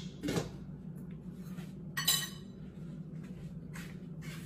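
Kitchen dishes and utensils clattering: a knock just after the start, then a sharper clink with a brief ring about two seconds in, over a steady low hum.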